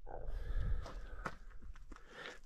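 Footsteps on gravelly desert ground, a few separate crunching steps over a low rumble.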